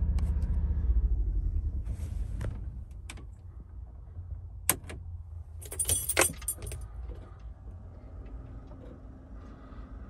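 Thermo King auxiliary power unit's small engine running, then winding down after being switched off at its cab control panel. After that comes a sharp click, then keys jangling at the truck's ignition, then a faint steady hum.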